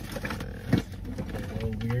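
Soft laughter in a car cabin over a steady low hum, with a short sharp burst about three-quarters of a second in and a man's voice starting near the end.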